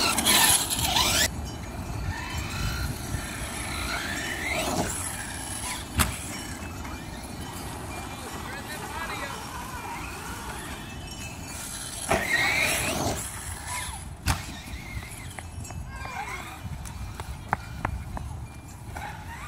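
Brushless electric motor of a Redcat Avalanche XTE RC truck on a 4S battery, whining up and down in pitch as it is throttled through snow. The loudest bursts come at the start and again about twelve seconds in, with a few sharp knocks along the way.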